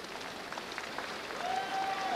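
Arena crowd noise: steady applause and cheering from the boxing audience, with a short held tone near the end.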